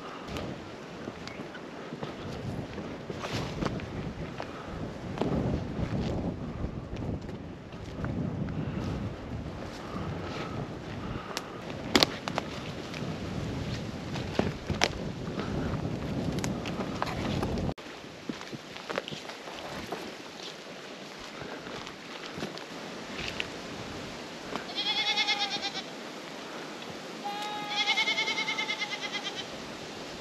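Footsteps crunching and brushing through dry grass and scrub, with a few sharp clicks. This breaks off suddenly, and near the end a feral goat bleats twice, each call wavering and lasting about a second and a half.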